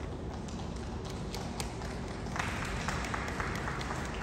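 Background noise of a large, echoing sports hall: a steady low rumble with scattered faint taps and clicks, and a broader rush of noise joining about halfway through.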